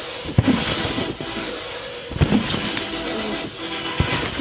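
Two heavy thumps of a person landing on a trampoline bed, about half a second in and again about two seconds in, over steady background music.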